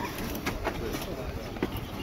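Shovels scraping and tipping soil into a grave, a few separate strokes, with low voices murmuring.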